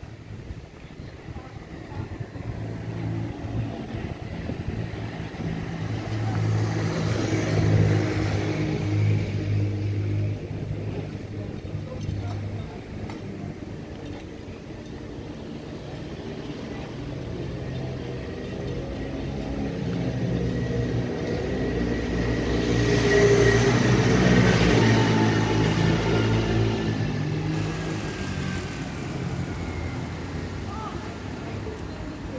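Motor vehicles passing close by twice, each engine growing louder and then fading, the second pass the louder one, about two-thirds of the way through.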